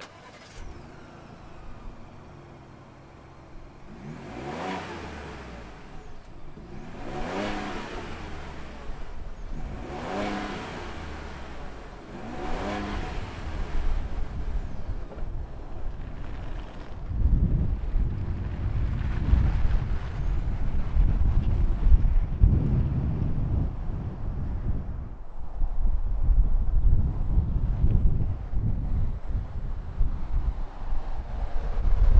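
2021 Ford Bronco Wildtrak's 2.7-litre twin-turbo EcoBoost V6 idling, then revved four times about three seconds apart, each rev a quick rise and fall in pitch. In the second half a louder, uneven low rumble as the Bronco drives off.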